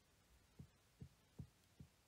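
Near silence broken by four faint, low, dull thumps, a little under half a second apart.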